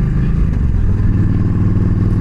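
Yamaha V Star 1300's V-twin engine running under way, heard from the rider's seat. Its note drops a little about half a second in, then holds steady.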